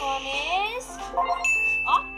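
Cartoon sound effects played through laptop speakers over background music: sliding, gliding tones, then a bright ding held for about half a second near the end.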